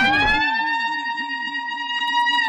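Electronic siren-style sound effect: a stack of tones that slides up and then holds steady, over a low warble that repeats about five times a second. The music's bass and beat cut out about half a second in.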